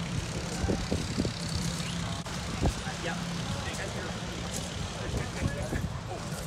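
Steady low engine drone of heavy construction machinery, with faint voices in the background and a few light knocks, the loudest about two and a half seconds in.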